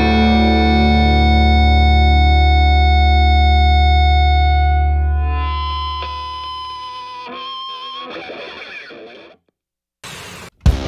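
Background rock music: a distorted electric guitar chord rings out and slowly fades, followed by a few quieter held guitar notes with a wavering pitch. The music drops out briefly just before the end.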